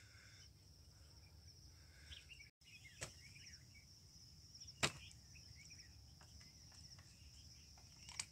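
Faint hillside ambience: a steady high-pitched insect trill with scattered faint bird chirps, and two sharp clicks about three and five seconds in.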